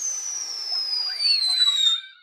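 Small ground firework spraying a jet of sparks with a loud, shrill whistle that falls steadily in pitch over a hiss, starting suddenly and stopping abruptly after about two seconds.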